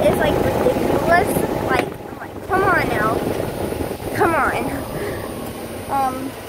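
Golf cart driving, a rough rumble of the moving cart and air buffeting the phone's microphone, easing off in the second half. Brief wordless vocal sounds from the girl come over it a few times.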